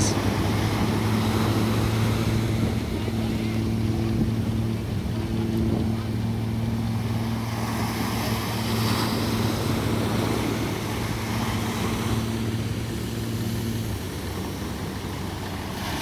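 Steady drone of a fishing boat's diesel engine running under way, over a wash of surf and wind noise. Part of the hum drops away about two seconds before the end.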